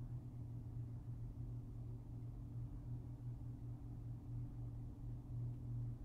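A steady low hum, unchanging throughout: quiet room tone with no distinct events.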